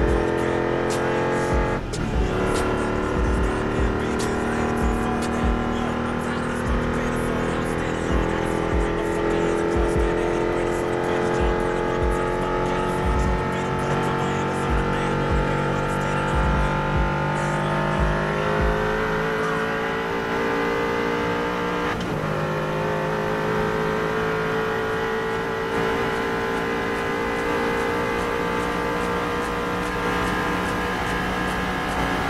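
A car's engine pulling at full throttle in a top-speed run, its note climbing slowly and steadily and dropping suddenly at two upshifts, about two seconds in and again about twenty-two seconds in.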